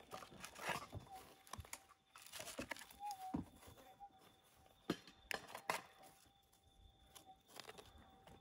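Fingers scraping and picking dirt and small stones out of a bedrock crevice: irregular small crunches, scrapes and clicks. Underneath runs the faint steady threshold tone of a Minelab GPX5000 gold detector, which swells briefly about three seconds in.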